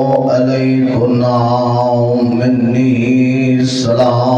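A man chanting in long, drawn-out melodic phrases, his voice amplified through a microphone.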